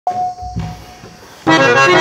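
Harmonium and tabla: a single harmonium note sounds and fades away, then about one and a half seconds in the harmonium starts a melody loudly, stepping from note to note over the tabla's low strokes.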